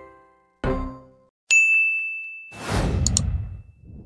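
Subscribe-button end-card sound effects: a last decaying chord of the outro jingle, then a bright, high ding about a second and a half in, the loudest sound, followed by a swelling whoosh with a quick double click around three seconds in.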